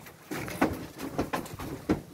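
A few short knocks and thumps, about four spread over two seconds, as green banana bunches are handled and stacked onto the truck bed during loading.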